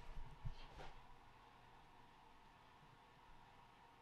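Near silence: room tone, with a few faint low bumps in the first second.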